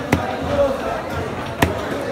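Two sharp knocks on a wooden chopping block, about a second and a half apart, as fish pieces and the blade are worked on it, over a steady background of voices.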